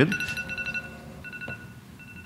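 Electronic beeping: a steady pitched beep lasting most of a second, a shorter one about a second later, then a faint third.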